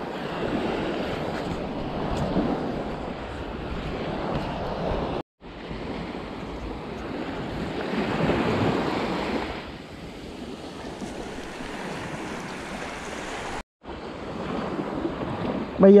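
Small waves washing up on a sandy shore, with wind buffeting the microphone; the sound drops out completely twice for a moment.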